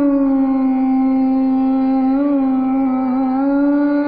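A woman singing one long sustained note in Indian classical style, with small wavering ornaments about two and three seconds in, over a steady drone.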